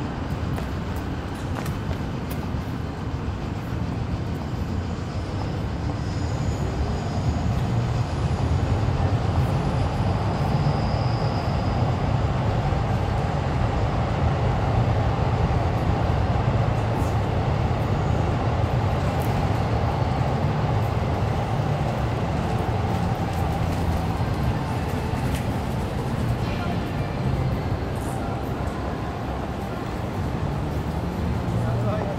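Steady low rumble of vehicles in a city street, swelling about six seconds in and easing off near the end, with passersby talking over it.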